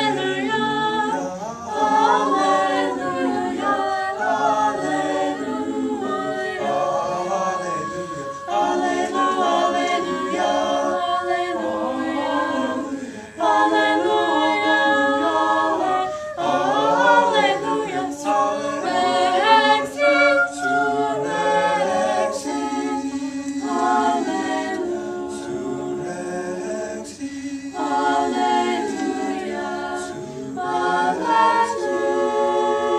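Small mixed choir of teenage voices singing a cappella in several parts, in held, sustained phrases, with a short breath break about 13 seconds in.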